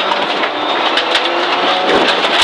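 Inside the cabin of a Subaru Impreza N14 rally car at speed on gravel: its turbocharged flat-four engine running under a loud rush of tyre and road noise, with frequent sharp clicks and knocks of gravel striking the underbody.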